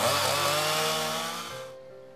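Chainsaw running with its bar cutting into a wooden stump, the engine pitch dipping and rising as it works. The sound fades out in the last half second.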